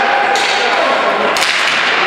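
Two sharp cracks about a second apart, of ball hockey sticks striking the ball or boards, over a steady din of voices in the rink.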